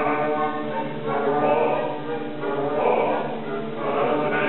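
Opera chorus singing, with sustained chords that swell and fade, over an orchestra.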